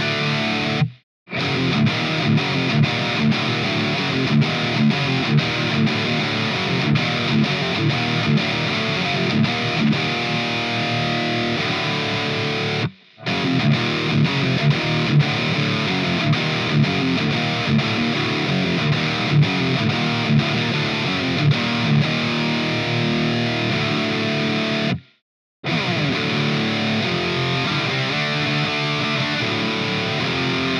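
Electric guitar on its bridge humbucker, through a Hughes & Kettner amp's clean channel driven by a Revv G3 distortion pedal, playing distorted riffs and picked lines. It is first the Ibanez Artcore AS73FM hollow body. After a brief cut to silence around 25 s, it is the Ibanez GRG121SP, with the same Classic Elite humbuckers. There are also short silent breaks about a second in and around 13 s.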